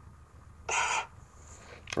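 A person's short, breathy exhale, one noisy puff lasting about a third of a second, coming just under a second in, over a low steady hum.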